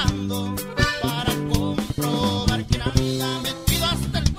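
A live band playing an instrumental passage: drums keep a steady beat under sustained bass notes and a wavering melody line.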